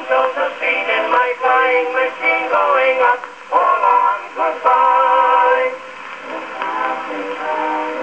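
A 1911 Victor acoustic 78 rpm record of a vocal duet with small orchestra, played through a 1905 Victor Type II horn gramophone with an oak horn. The sound is thin and tinny, with little bass or treble. The singing stops a little past halfway, and the accompaniment carries on more quietly with held notes.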